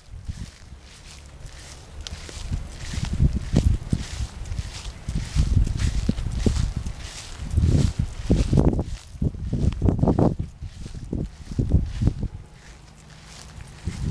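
Footsteps of a person walking across a grass lawn, with uneven bursts of low rumble on the microphone, heaviest in the middle of the stretch.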